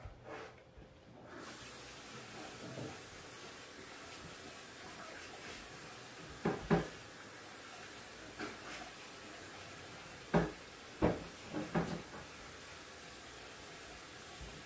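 A handful of short knocks and clacks: two about six and a half seconds in, then three more between about ten and twelve seconds. They sound like household things being knocked or set down close to a handled phone, over a steady quiet room hiss.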